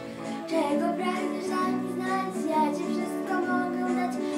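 A young girl singing a lullaby solo over instrumental accompaniment.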